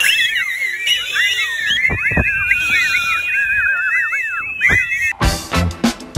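Loud finger whistling, a long run of quick rising and falling glides. About five seconds in, it cuts off and instrumental music with a beat starts suddenly.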